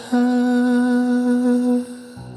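A male pop singer's voice holds one long, steady note after a quick breath at the start, dying away shortly before the end.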